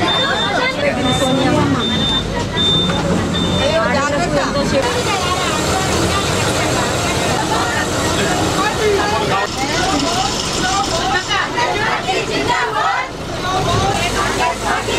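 Many passengers talking at once inside a bus, over the bus's running engine. A short high beep repeats about every two-thirds of a second for the first few seconds.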